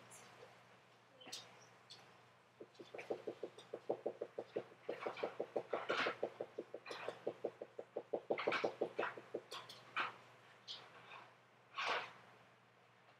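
A small dog making a fast, even run of short sounds, about six a second, for several seconds, with a few scattered clicks around it. A louder sharp sound comes near the end.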